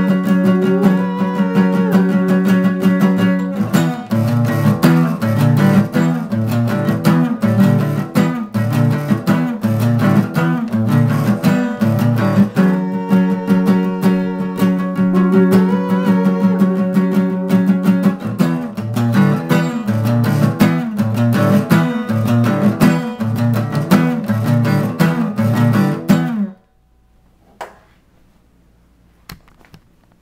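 Acoustic guitar strummed in a steady rhythm, with a man's wordless singing over held notes. The playing stops abruptly about 26 seconds in, leaving faint room sound with a few small knocks.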